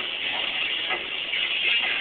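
Steady road noise from a vehicle driving on a highway, with music in the background.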